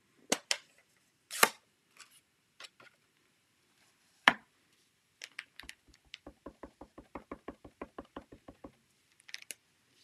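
Hard plastic clicks and knocks as a stamp case and ink pad are handled and opened, then a quick, even run of light taps, about five a second for three and a half seconds, as a stamp mounted on a clear acrylic block is tapped onto the ink pad to ink it.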